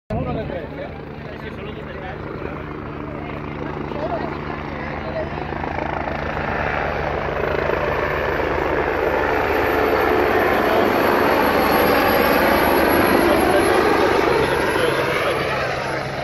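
AgustaWestland AW109 twin-turbine air-ambulance helicopter approaching to land, its rotor and engine noise growing steadily louder as it comes closer. A thin high-pitched turbine whine rises in the mix about halfway through.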